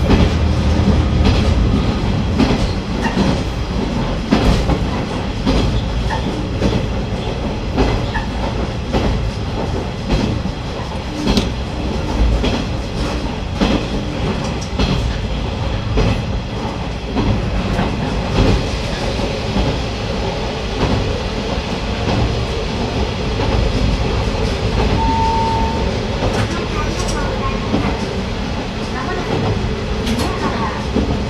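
KiHa 120 diesel railcar running along the track, its engine droning steadily, with the clickety-clack of its wheels passing over the rail joints.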